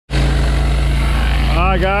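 Pressure washer running steadily while a 20-inch surface cleaner sprays a concrete sidewalk: a constant engine hum under an even hiss of water.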